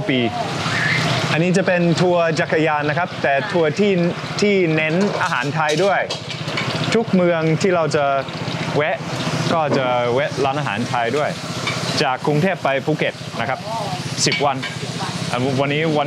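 Voices talking throughout, the chatter of people around a busy restaurant counter, over a faint steady low hum.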